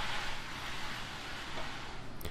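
Bull float's magnesium head gliding over freshly screeded wet concrete: a faint, steady hiss.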